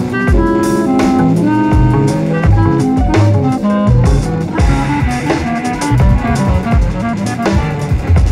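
Instrumental jazz recording: a drum kit and bass carry a steady groove while several melodic instruments play short held notes over it.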